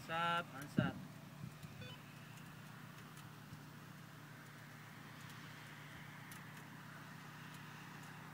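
A brief voice in the first second, then a faint, steady low hum of an idling engine.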